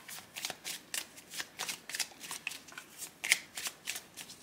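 A tarot deck being shuffled in the hands: a quick, uneven run of soft card snaps as cards are pulled and dropped from one hand to the other.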